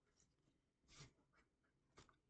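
Near silence, with a few faint soft ticks of a tarot deck being shuffled in the hands, the clearest about a second in.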